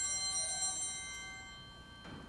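Altar bells, a set of small hand bells, shaken several times to mark the elevation of the consecrated host. They give a bright, many-toned jingling ring that dies away in the last second.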